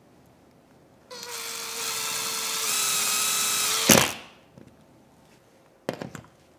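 Cordless driver running a screw into an OSB wall panel: a steady motor whine for about three seconds that grows louder partway through, ending in a sharp knock as it stops. A light knock follows near the end.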